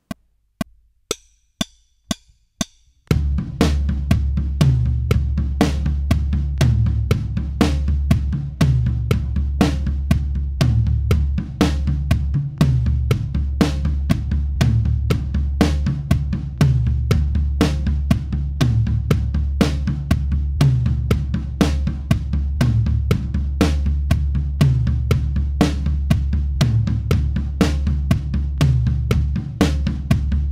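Drum kit: about six evenly spaced clicks as a count-in, then from about three seconds in a steady beginner groove like the money beat, with a rack tom hit on beat 4 in place of the snare, alternating between rack tom 1 and rack tom 2 across a two-bar phrase.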